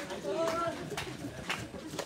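Footfalls of a group jogging on a paved path, a soft tick about every half second, with a brief voice-like call about half a second in.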